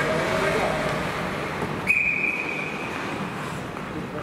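Ice hockey referee's whistle: one sharp, steady blast about two seconds in, lasting about a second and a half, blown to stop play before a faceoff, over the murmur of voices in the rink.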